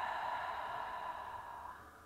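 A woman's long, audible exhale through the mouth, releasing a deep breath, trailing off near the end.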